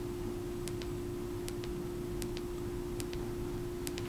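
Side mode button of an Orcatorch T20 tactical flashlight pressed repeatedly to cycle its brightness settings: about five faint clicks, one every second or so, over a steady hum.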